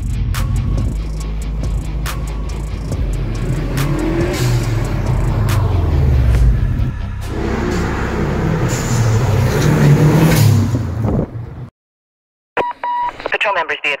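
Modified car engines revving and accelerating, the pitch rising and falling as the cars pull away and pass. It cuts off suddenly about 12 seconds in, followed by a police-radio beep and a radio-filtered dispatcher's voice near the end.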